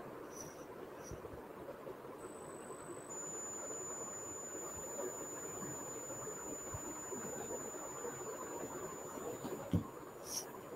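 Background noise from an open microphone on an online video call: a steady hiss and rumble, joined about two seconds in by a faint high-pitched whine that holds to the end, with a soft low thump just before the end.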